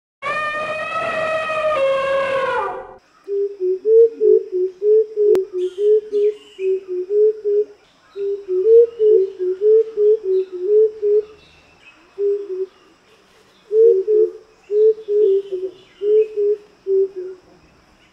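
Green-billed coucal calling: a long series of short, low, hooting notes, about three a second, in runs with brief pauses, with faint chirps of other birds behind. It is preceded by a brief held tone with many overtones that drops slightly in pitch about two seconds in.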